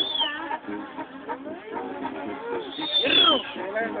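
People's voices, low and indistinct, with one high-pitched call about three seconds in that rises and falls.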